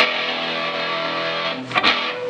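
Electric guitar: a chord strummed once and left ringing, then struck again twice in quick succession near the end.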